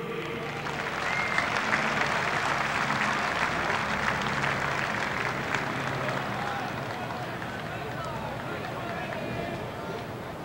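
Stadium crowd applauding a player's introduction. The applause swells over the first couple of seconds, then slowly fades.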